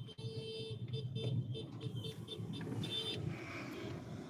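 Car running in slow traffic, heard from inside the cabin: a steady low engine and road rumble. Short high-pitched tones break in and out over it, like horns or beeps from the traffic around.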